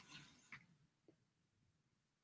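Near silence: room tone, with a few faint, brief soft sounds in the first half-second.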